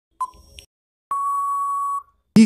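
Quiz countdown timer sound effect: one short beep as the count reaches its last second, then about a second later a long, steady beep marking that time is up.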